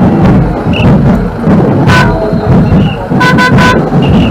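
Vehicle horn tooting once about halfway through, then three quick toots near the end, over loud street percussion with a steady beat.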